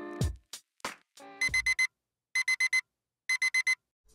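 Digital alarm clock beeping: three bursts of four quick high-pitched beeps, about a second apart, starting about a second and a half in. A music track ends with a few falling low notes in the first second.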